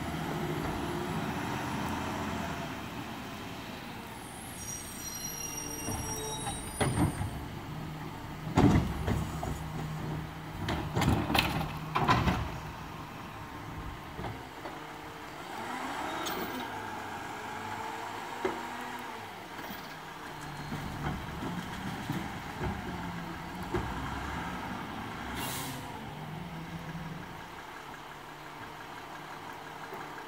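Mack automated side-loader garbage truck running, its engine rising and falling as the hydraulic arm lifts and empties curbside cans. A cluster of loud bangs from the cans being dumped and set down comes about a third of the way in. A short air-brake hiss comes near the end.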